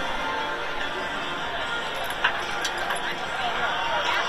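Ballpark PA music playing over crowd chatter in the stands, with a single sharp knock about two seconds in.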